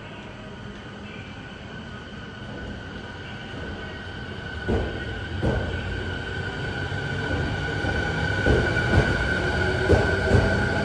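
JR East 209 series electric train pulling away from a station platform: its traction motors and inverter give a steady high whine. A low rumble builds and grows louder as the train gathers speed, with a few knocks from the wheels on the track from about five seconds in.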